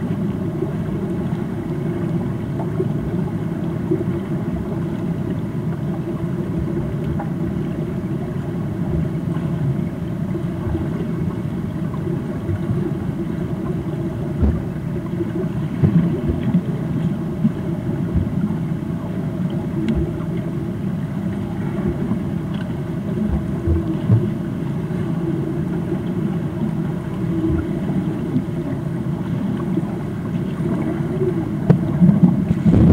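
Muffled underwater sound of a swimming pool: a steady low rumble of water churned by swimmers' strokes and kicks, with a few dull thuds.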